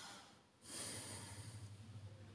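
A person breathing near the microphone: one soft breath fading out about half a second in, then another lasting about a second, over a steady low hum.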